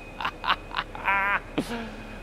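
A man laughing with no words: a few short breathy laughs, then a high, wavering vocal sound about a second in, and a brief low hum near the end.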